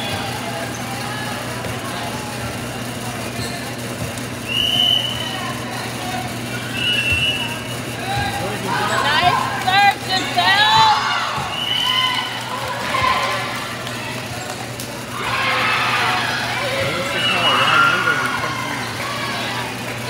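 Players' and spectators' voices calling out and cheering in a gym during a volleyball rally, with a few short high squeaks of sneakers on the hardwood court over a steady low hum.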